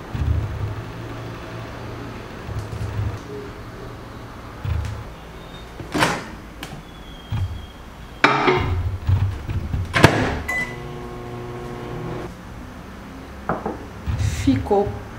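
Silicone spatula stirring thick melted chocolate in a glass bowl, then a microwave oven door clicking open, the bowl clattering inside, the door shut with a sharp knock, a single keypad beep, and the oven's steady hum for about two seconds.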